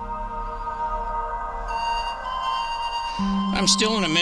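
Soft ambient background music of steady held tones. A man's voice starts talking near the end.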